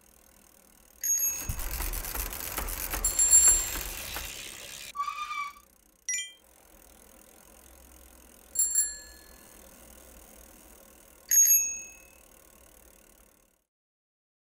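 Cartoon bicycle sound effects. A rattling rolling-bicycle noise with bell chimes in it runs for about four seconds, followed by a short wavering tone. Then a bicycle bell rings twice, a few seconds apart.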